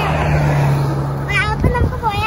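A motor vehicle running by on the road, a steady low engine hum that fades out after about a second and a half, with a girl's voice starting to speak over the end.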